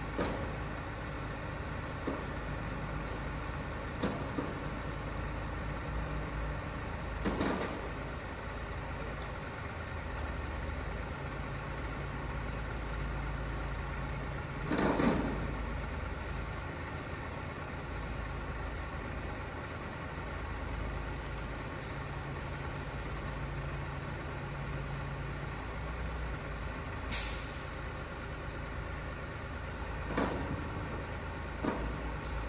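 Heavy recovery trucks' diesel engines running steadily while a tanker body is winched upright. Short bursts of air hiss come about 7 seconds in and again around 15 seconds, the loudest event, with a brief sharp high hiss near the end.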